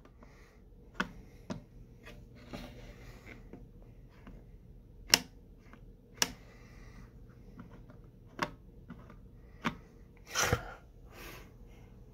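Scattered plastic clicks and knocks from handling UNI-T and Klein Tools clamp meters, their jaws worked open and shut and the meters knocked against a wooden tabletop. About eight separate clicks, the sharpest about five seconds in, and a short cluster of knocks near the end.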